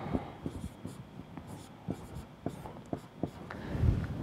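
Marker pen writing on a whiteboard: a series of short, irregular strokes and light taps.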